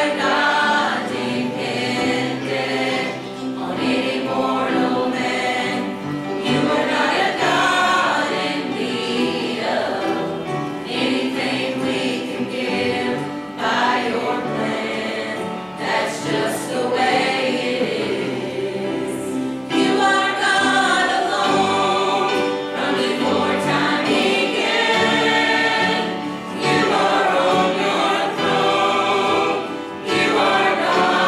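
Church choir of men and women singing a gospel song together, steady and continuous.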